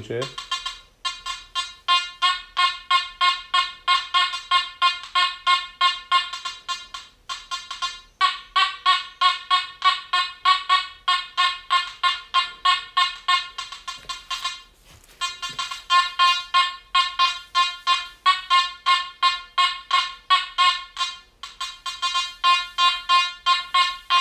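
Makro Gold Kruzer metal detector beeping rapidly, about four buzzy beeps a second on one steady pitch, in four long runs with short breaks between them. It is running in boost at gain 80, a setting the operator calls as high as it will go here.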